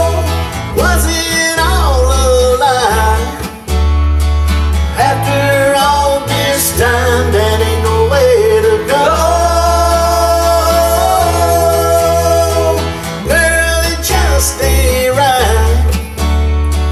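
Country song played live on acoustic guitar and electric bass guitar, with a man singing a melody that slides between notes.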